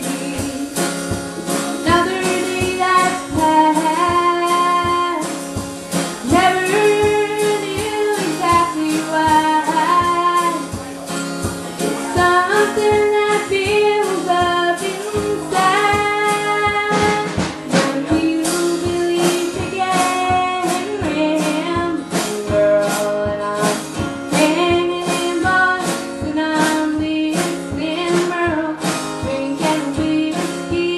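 A woman singing a country song live, accompanied by her own strummed acoustic guitar and a drum kit. The sung melody is most prominent in the first half, and the strummed, steady beat is more prominent in the second half.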